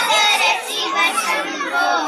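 A group of children chanting a Ganesha stotram together in unison, many young voices blending without a pause.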